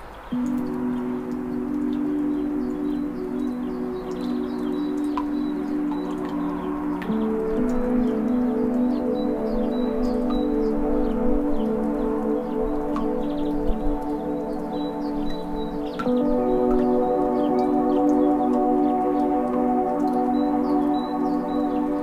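Ambient meditation music: sustained chords that enter just after the start, shift about seven seconds in and again around sixteen seconds, each time growing fuller. Faint scattered high chirps sit underneath.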